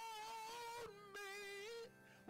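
A man singing a hymn in long held notes: one note for just under a second, then a slightly lower note held for about another second.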